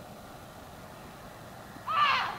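Faint steady outdoor background, then right at the end a sudden loud high-pitched cry that rises and then falls in pitch.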